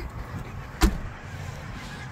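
The rear swing gate of a 2023 Ford Bronco Everglades, with the spare tire mounted on it, pushed shut by hand and closing with a single sharp slam about a second in.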